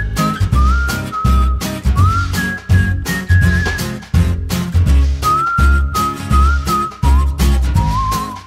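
Upbeat background music: a whistled melody over a bouncing bass line and a steady drum beat.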